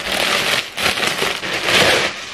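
Clear plastic garment bag crinkling and rustling as a blazer is pulled out of it, loudest near the end.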